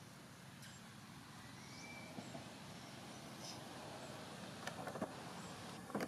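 Faint outdoor ambience dominated by a steady low rumble of distant road traffic, with a short high note about two seconds in and a few light clicks near the end.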